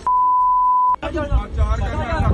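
A steady single-pitch censor bleep, held for about a second and cutting off sharply, masking abusive words in the clip's audio; men's voices follow straight after.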